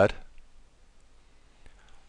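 Faint computer mouse clicks over quiet room tone.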